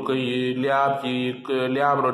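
A man's voice chanting in long held notes, in two drawn-out phrases.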